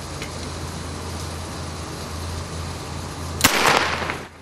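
A single starter-pistol shot about three and a half seconds in, the start signal for the team, over a steady low hum.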